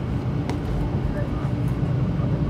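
Cabin running noise of a 500 series Shinkansen on an elevated track: a steady low rumble from the wheels and track with a faint hum, and a single sharp click about half a second in.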